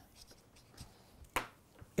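Faint felt-tip marker moving over paper, with one sharp tap a little past halfway.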